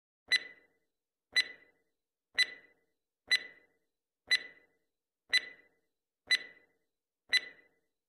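Countdown-timer tick sound effect: a sharp click with a short ring, once a second, eight times.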